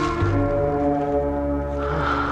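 Film background score: a sustained, held low chord, a steady drone with no melody moving.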